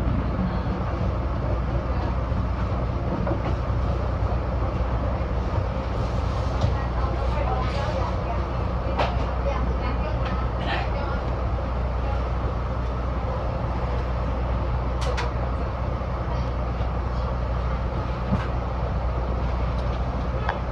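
Diesel railcar running slowly into a station, heard from the cab: a steady low engine drone with wheel and rail noise and a few sharp clicks from the wheels over rail joints and points.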